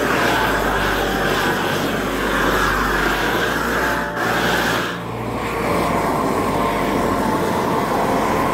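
Flame King long-wand propane torch burning with a loud, steady hiss as its flame is played over wood to char it. The sound dips briefly about five seconds in, then runs steady again.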